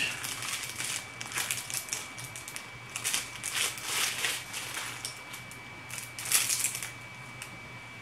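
Plastic wrapping crinkling as it is handled and pulled off new makeup brushes, in irregular rustling bursts, loudest around the middle and again about six seconds in.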